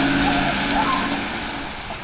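Vehicle engine running as it drives off, a steady low hum that fades out near the end.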